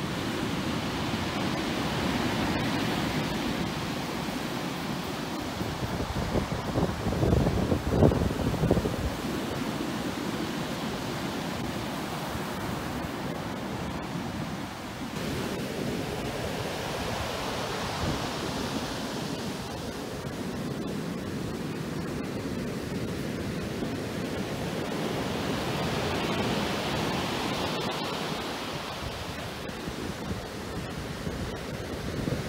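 Rough surf breaking and washing up the beach, with strong wind buffeting the microphone. A louder, rumbling gust of wind noise comes about seven to nine seconds in.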